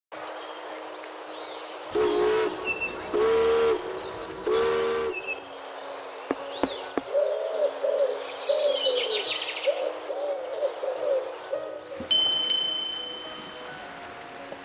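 Layered sound effects: three short horn blasts in the first five seconds, then warbling and chirping bird calls over a low steady hum, and a sharp ringing strike about twelve seconds in.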